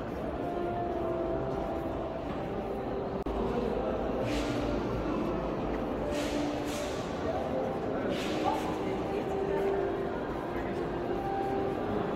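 Indistinct chatter of many people, overlapping voices with no words standing out, holding steady throughout.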